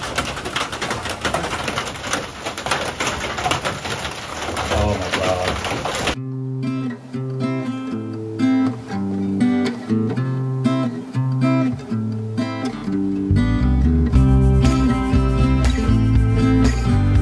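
Light rain pattering and dripping for about six seconds, then a sudden cut to acoustic guitar music, picked notes with deeper bass notes joining near the end.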